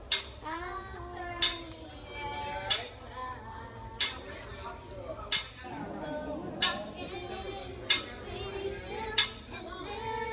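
A woman singing, with a sharp metal clink about every 1.3 seconds, steady like a beat: hibachi utensils struck against the steel griddle to keep time.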